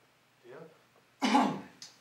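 A person coughing once, a sudden loud burst about a second in that dies away quickly, after a faint short vocal sound.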